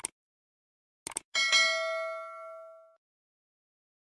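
Subscribe-animation sound effects: a short click, then two quick clicks about a second in, followed by a single bright bell ding that rings out and fades over about a second and a half.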